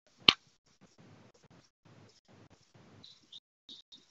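A single sharp click about a third of a second in, then near silence with a few faint high ticks near the end.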